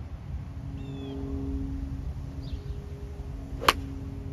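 A golf iron striking a ball off a driving-range mat: a single sharp crack near the end, over a low outdoor rumble with a faint steady hum and a couple of faint bird chirps.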